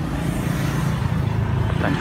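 Steady low hum of road traffic, a motor vehicle engine running close by; a man's voice starts near the end.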